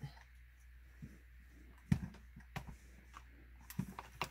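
A clothes iron handled on fabric on a padded pressing surface: quiet movement with a few soft knocks, the loudest about two seconds in, over a low steady hum.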